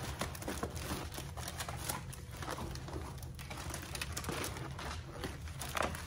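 Crinkling and rustling of a Diamond Dots diamond-painting canvas being unrolled and handled, its clear plastic cover film and stiff paper backing crackling in irregular bursts over a steady low hum.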